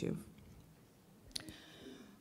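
A pause in a woman's speech: the end of a word at the start, then faint room tone broken by a single short click about one and a half seconds in.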